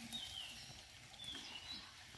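Faint bird chirps: a few short calls, one near the start and more about a second later, over low outdoor background noise.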